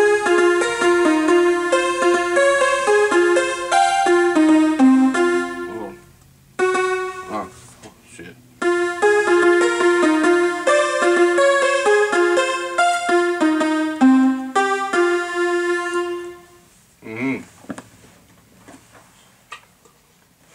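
Portable electronic keyboard playing a quick melody over chords. It runs in two long passages with a short break about six to eight seconds in, and stops about three-quarters of the way through.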